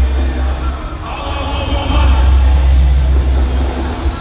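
Live hip-hop concert music from a band over a large PA, dominated by heavy bass, with a brief dip in loudness about a second in before the bass comes back.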